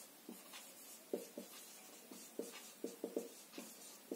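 Marker pen writing on a whiteboard: a faint, irregular run of short strokes as a word is written out.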